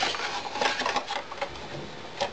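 Handling noise: small hard plastic and metal objects clattering and rustling on a cardboard-covered bench as a mains plug and a power adapter with its lead are picked up, dying down near the end.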